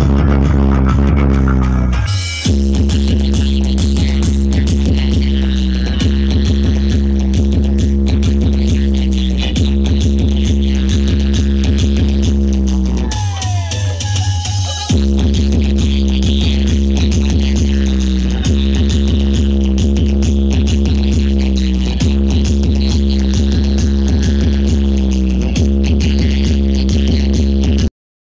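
Loud electronic dance track with a heavy, pounding bass played through a DJ sound-system setup. The beat drops out briefly about two seconds in, and again for about two seconds in the middle, where a falling sweep sounds before the bass comes back in.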